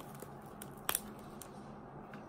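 A steamed crab's shell cracking as it is broken in half by hand: one sharp snap about a second in, with a couple of fainter clicks.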